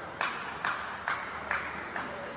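Steady rhythmic clapping, a little over two claps a second, over a steady hiss.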